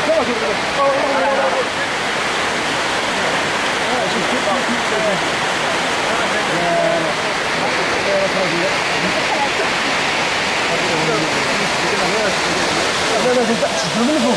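A tall waterfall with several streams falling down a cliff into the pool below, a steady, loud rush of water. Faint voices of people talking come through under it now and then.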